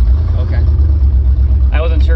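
Loud, steady low rumble of riding in a moving roofless Lincoln on a rough dirt road: engine, tyre and open-cabin wind noise together. Voices come in near the end.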